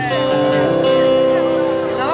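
Amplified acoustic guitar chords ringing out through a PA, held steady, with a change of chord under a second in.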